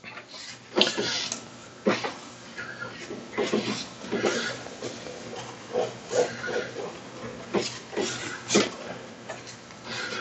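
Folded paper towel with Windex rubbed back and forth over a dry-erase painted wooden panel: a run of irregular wiping strokes, some of them squeaking briefly.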